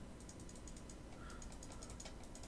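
Computer keyboard keys pressed in a quick, faint run of light clicks, as text in a title is edited and selected.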